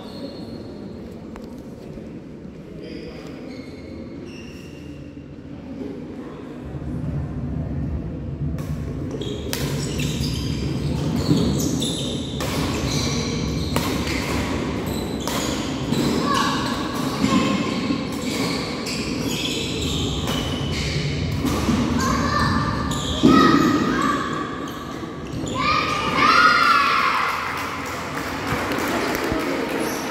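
Badminton rally on a wooden indoor court: racket strikes on the shuttlecock and quick footfalls, a string of sharp hits starting about a third of the way in, with voices in the echoing hall.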